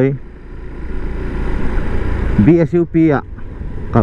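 Motorcycle running along a street, heard from the rider's camera as a steady low rumble of engine and wind. The rumble drops briefly just after the start and builds back up over about a second. A man speaks briefly about two and a half seconds in.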